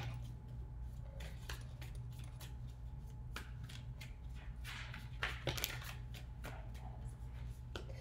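A tarot deck being shuffled by hand: quick soft rustles and clicks of cards sliding against each other, with a few sharper snaps about three and a half and five and a half seconds in.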